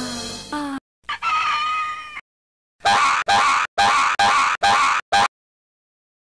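Soundtrack audio: a run of falling musical notes cuts off suddenly, then a held high cry, then six loud short shrieks in quick succession that stop abruptly.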